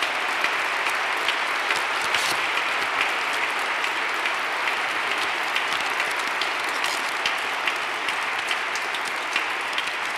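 An audience applauding steadily, many hands clapping at once, for the award nominees standing to be recognized.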